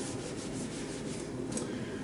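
Felt whiteboard eraser wiping a dry-erase whiteboard in quick back-and-forth strokes, about five a second, stopping about one and a half seconds in.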